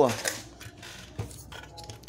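A few faint clicks and knocks as a circuit board is handled and turned over on a workbench.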